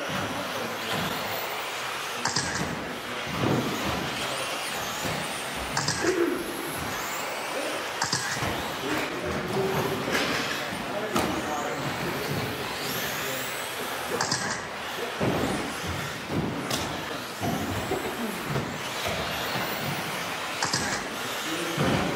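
2WD RC buggies racing on an indoor track, their motors whining up and down in pitch as they accelerate and slow, with scattered knocks from landings and impacts. Indistinct voices sound underneath.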